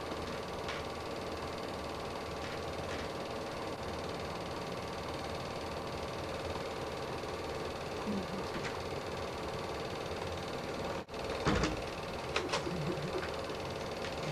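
Film projector running with a steady mechanical whirr and hum. The sound cuts out briefly about eleven seconds in, and a few faint clicks follow.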